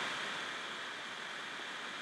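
Faint, steady hiss of room tone with no distinct sounds.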